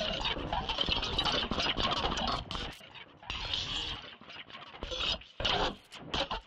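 Electronic music: a heavily modulated Mimic sampler synth in Reason plays a dense, choppy texture built from a resampled sound file. It drops out briefly about halfway through and again near the end.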